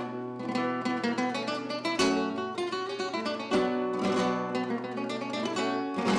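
Acoustic guitar being played, plucked notes and strummed chords over a ringing low note, with sharp strums about two seconds in and again around three and a half and four seconds.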